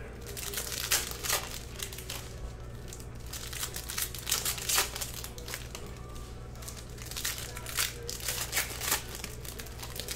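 Foil trading-card pack wrappers crinkling and tearing as packs are opened and handled. The irregular sharp crackles come in bunches: one about a second in, a longer run in the middle, and another near the end.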